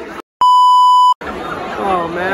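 A single steady, high-pitched electronic beep about three quarters of a second long, set into a brief dead-silent gap in the audio: an edited-in censor bleep.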